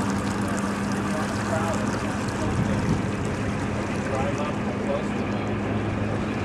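Boat engine running steadily, a low even hum over a wash of water and air noise.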